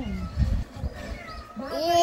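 A young child's drawn-out, whiny "ay" cry that rises and then holds near the end, with a dull bump about half a second in.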